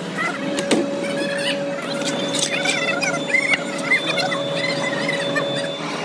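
Foundry sand mixer running: a steady motor whine, with repeated short, high squeals over it.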